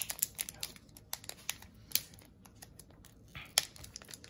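Foil wrapper of a Pokémon booster pack crinkling and tearing as it is handled and opened: a quick run of sharp crackles over the first two seconds, then sparser crackles with one louder one near the end.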